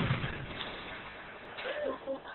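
The low rumble of an ignition inside an explosion-proofness test chamber, dying away. Faint short voice sounds come near the end.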